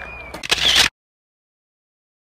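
A short, sharp noise burst about half a second in, lasting under half a second and cutting off abruptly into dead silence.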